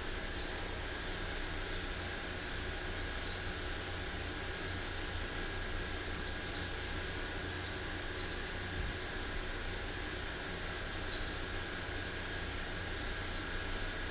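Steady background hiss with a low hum and a faint high whine, marked by faint, brief high chirps every second or two.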